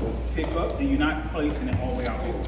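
Indistinct talk of people in a large room, over a steady low hum.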